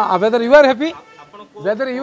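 A man speaking emphatically in Odia to reporters, pausing briefly about a second in before carrying on.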